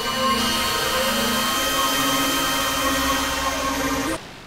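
Experimental electronic drone music: layered sustained synthesizer tones over a bed of hiss, with the low tone stepping slightly higher about a second and a half in.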